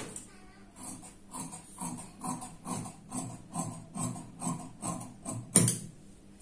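Tailor's scissors cutting through cotton blouse fabric on a cutting table, a steady series of snips about two to three a second, with a louder clack near the end.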